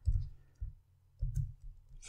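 Computer keyboard being typed on: about four separate keystrokes, each a short knock.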